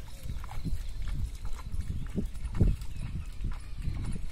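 Bare feet wading through shallow water and mud in a flooded paddy, a splash and slosh with each step, about two steps a second.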